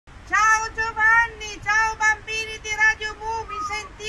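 A high voice singing a quick tune of short syllables with no clear accompaniment.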